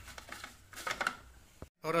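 A few faint clicks and taps of hard plastic as the Bosch food processor's clear bowl and lid are handled, then a brief dropout to silence near the end.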